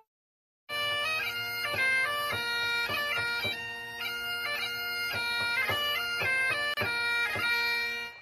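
Bagpipe tune played over a steady drone, starting just under a second in.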